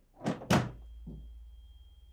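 A front door unlatched and pulled open: two sharp clunks about a quarter second apart, the second the loudest, and a softer knock after. A low steady hum sets in right after the door opens.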